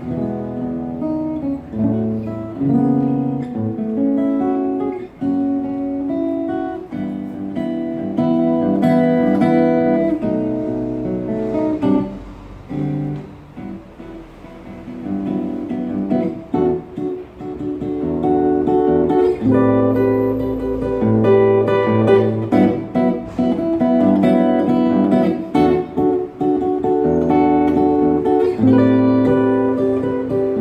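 Solo acoustic guitar playing a jazz piece, a mix of melody lines and chords. About twelve seconds in the playing drops to a quieter, sparser passage, then fuller, louder chords return a few seconds later.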